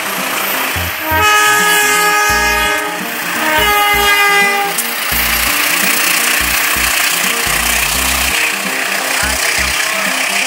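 Diesel locomotive air horn sounding twice, a long blast of about two seconds, then a shorter one that slides in pitch, over background music with a steady bass beat. A loud, even rushing noise follows for the second half.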